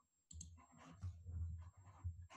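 A few faint clicks from a computer keyboard and mouse.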